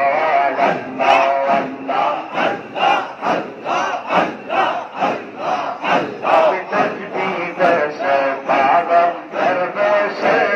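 A large crowd of men chanting zikr together, loud and rhythmic, about two strong beats a second.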